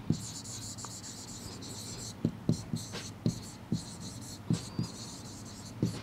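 Handwriting on a board: a string of short taps and strokes from the writing tip as a few words are written, over a low steady hiss.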